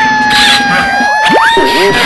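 Edited-in cartoon sound effects: a held, slightly wavering siren-like tone, crossed by quick rising and falling whistle swoops and a fast upward sweep near the end.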